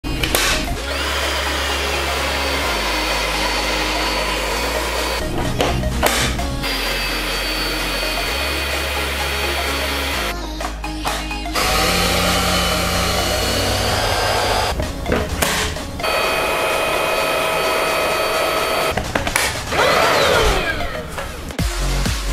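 Xiaomi Mi Handheld Vacuum Cleaner 1C, a cordless stick vacuum, running with a steady high motor whine that breaks off briefly every few seconds, over background music with a bass line. Near the end a falling swoosh sounds.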